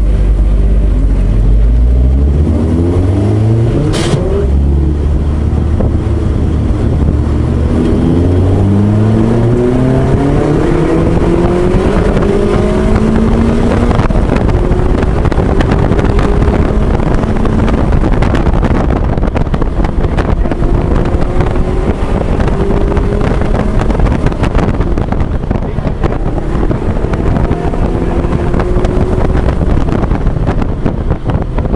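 S1 Lotus Elise engine heard from the open cockpit, accelerating hard through the gears, its pitch climbing with upshifts about 4 and 8 seconds in, then running at speed with wind noise in the open cabin.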